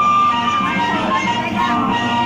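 A coin-operated kiddie ride car playing its electronic jingle, a simple tune of held notes.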